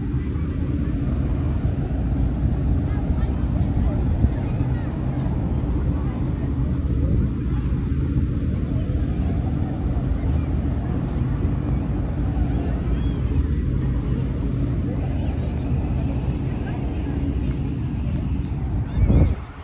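Ship's engine running steadily across the harbour: a continuous low drone with an even hum.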